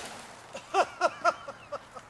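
The dying rush of a potato gun's shot fades away, then a man laughs in a run of short, falling 'ha's, about four a second.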